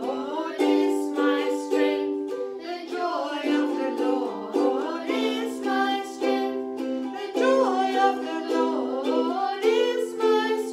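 A ukulele strummed in steady chords while a woman and children sing along.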